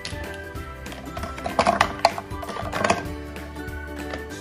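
Background music with steady held notes, overlaid by a few sharp clacks of plastic markers being dropped into a plastic pen organiser, clustered around the middle and again just before the three-second mark.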